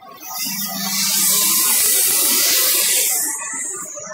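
Loud steady hiss of steam venting from a plastics compounding extruder line, starting just after the start and cutting off about three seconds in. A low machine hum runs under it for about a second.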